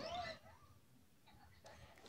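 A faint voice trails off in the first moment, then near silence: room tone.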